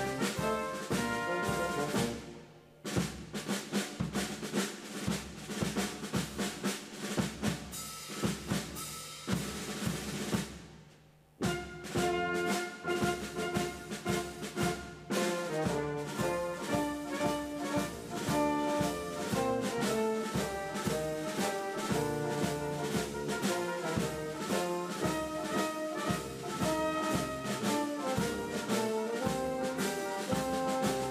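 Band music led by brass with drums and a steady beat, falling away briefly twice, about two and a half and eleven seconds in.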